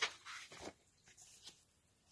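Paper rustling as the pages of a large picture book are handled and the open book is turned around. It is sharpest at the very start, then a few fainter rustles follow.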